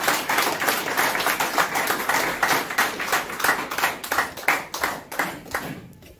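Hands clapping in a quick run of claps that tapers off and stops near the end.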